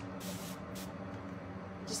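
Hand-pump spray bottle of water spritzing a foam paint roller, three short hissing sprays, dampening the roller before it is loaded with chalk paint.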